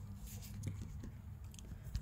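Faint rustling and light clicks of fingers handling a wiring harness in corrugated plastic loom, over a low steady hum.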